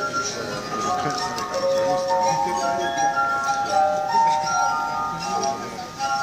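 Glass harp: rows of water-tuned glasses played by rubbing their rims, giving a slow melody of long, held, ringing tones that overlap one another. Voices murmur faintly underneath.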